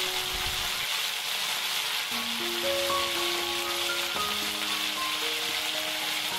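Fish deep-frying, fully submerged in plenty of hot oil in a frying pan: a steady sizzling hiss of bubbling oil. Soft background music plays over it, a slow melody of held notes.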